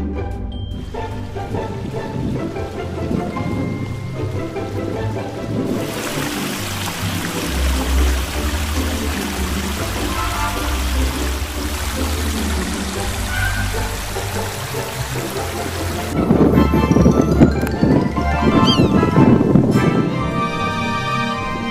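Background music plays throughout; from about six seconds in to about sixteen seconds in, the steady rush of a small mountain stream cascading over rocks is mixed in with it. Near the end the music grows louder.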